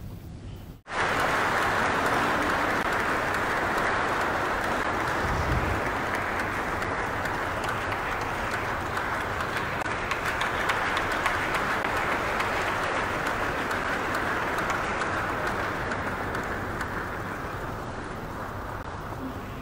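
Audience applauding, beginning abruptly about a second in and continuing steadily, then slowly tapering off near the end.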